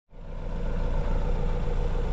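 Kubota 5460 tractor's diesel engine idling steadily, fading in at the start.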